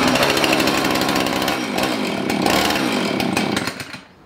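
Husqvarna two-stroke chainsaw engine running hard with its chain left loose on the bar, so that burred drive links catch and wear down. Its pitch falls and rises midway, and the engine stops near the end.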